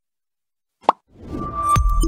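Silence, then a single short plop sound effect just before one second in, followed by a rising swell into an electronic outro jingle with held tones and sharp clicks.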